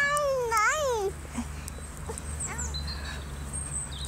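A young dog giving a high, drawn-out whining call during rough play, rising and falling in pitch over about a second at the start, then a short whimper about two and a half seconds in.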